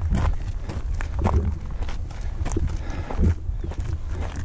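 Footsteps on a rocky, gravelly trail: a run of short, uneven scuffs and knocks, over a steady low rumble.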